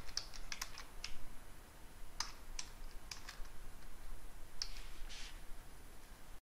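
Computer keyboard being typed on slowly: a dozen or so separate keystrokes at uneven intervals.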